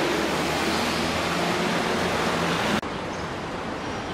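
Steady loud rushing noise with a faint low hum under it, which drops abruptly to a quieter hiss about three seconds in, as at a cut.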